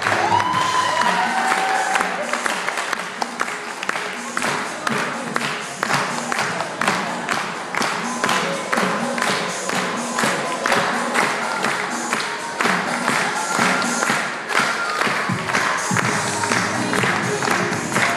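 Lively music with a steady beat, and an audience clapping along and cheering, with a couple of whoops in the first two seconds.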